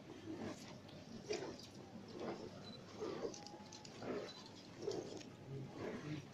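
Costaleros' feet shuffling in step beneath a Holy Week paso (the racheo): a rasping scuff on the street pavement about once a second as the float moves slowly forward.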